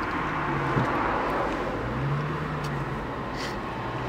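BMW M3 engine running steadily under way, heard from inside the cabin along with road and tyre noise. Its note swells slightly about two seconds in, then eases back.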